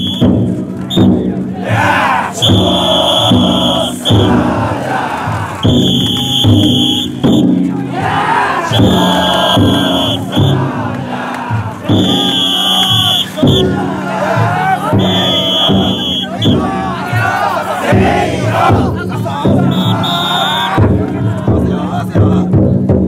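Taikodai festival-float crowd: many bearers shouting and chanting together over the steady beating of the float's big taiko drum, with a shrill whistle blown in blasts of about a second, six times.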